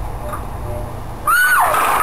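A person's high-pitched shriek breaks out about two-thirds of the way in, over a sudden clatter of light paper cups tumbling from a stacked tower.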